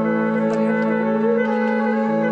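Recorded brass instruments holding a sustained chord, one line moving slowly beneath it: an unmixed stem of a song being played back, recorded in a room with a live sound.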